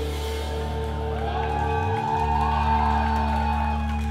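Live band music: a chord held over a steady low bass note, with a higher line wavering above it from about a second in.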